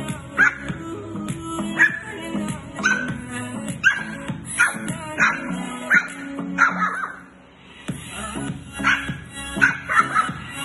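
Lhasa Apso puppy giving short barks and yaps about once a second, with a brief lull near the three-quarter mark, over a song playing from a small Bluetooth speaker.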